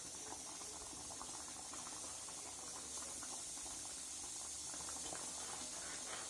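Fish gravy bubbling faintly as it simmers in a clay pot, a scatter of small irregular pops over a steady high hiss.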